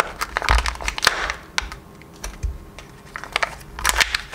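Printed seal being peeled off the plastic half-shell of a Kinder Joy egg: quick crinkling and crackling with sharp clicks, busiest in the first second or so and again near the end.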